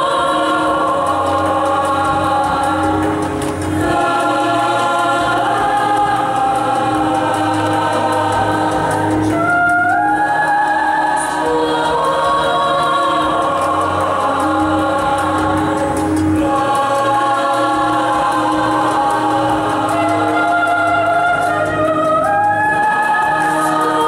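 Large youth choir singing in several-part harmony, holding chords over a steady low note, with the voices sliding up together to a new chord about ten seconds in.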